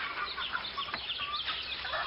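Farmyard fowl clucking and calling, with many short, high chirps overlapping throughout.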